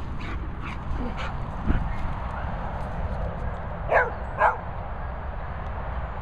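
A dog gives two short barks about four seconds in, half a second apart.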